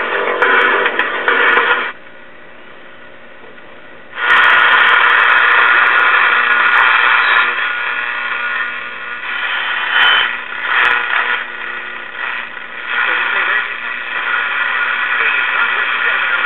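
A circa 1947 GE five-tube AC/DC AM radio being tuned across the dial, heard through its raspy speaker, whose voice coil drags. A snatch of broadcast comes first, then a quieter lull about two seconds in. From about four seconds there is loud hiss and static between stations, with a brief whistle and fragments of weak stations.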